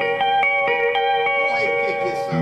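Electric guitar playing a melodic run of single notes, each ringing briefly before the next.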